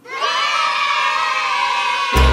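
A group of children cheering and shouting together in one sustained cheer that starts suddenly.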